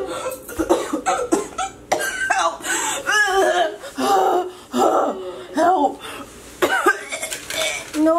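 A person's wordless, distressed vocalising: short, uneven cries and coughs one after another.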